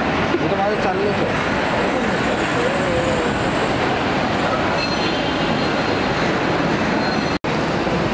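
Loud, steady rumble of a busy airport kerbside, with indistinct voices talking underneath in the first few seconds. The sound drops out for an instant near the end.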